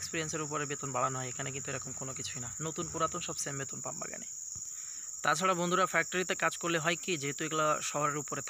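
Steady high-pitched drone of insects, with a man talking over it. The drone is heard on its own during a short pause in the talk about halfway through.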